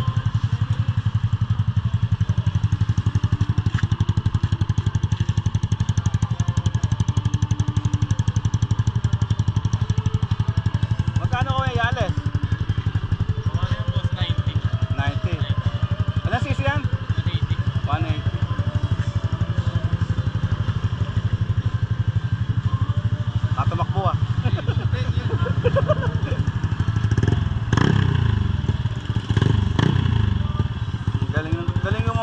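Yamaha NMAX scooter's single-cylinder engine idling steadily.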